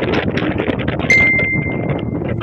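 Open-top jeep running along a road: engine and the rattle of the open body, with wind on the microphone. About a second in, a click is followed by a steady high tone lasting about a second.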